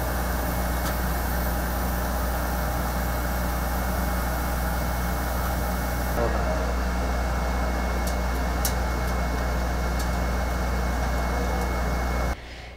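Laser cutting machine running: a steady low hum with an even whir over it, and a few faint ticks.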